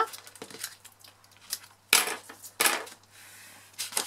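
Handling noise from putting down strips of double-sided tear and tape on cardstock panels: scattered clicks and taps, two sharp clacks about two seconds in, and a short hiss near the end.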